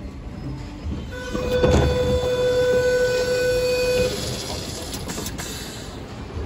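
Sydney Trains double-deck suburban train at a platform, its doors opening: a steady electronic tone held for about three seconds, with a clunk from the door mechanism near its start.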